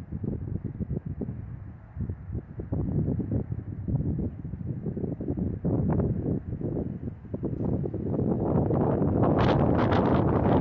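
Wind buffeting the microphone in uneven gusts, swelling louder and harsher about eight seconds in.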